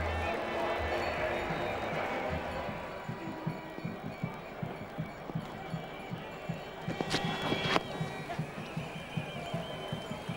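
Cricket ground background with music playing in the crowd, and a sharp crack of bat on ball about seven seconds in.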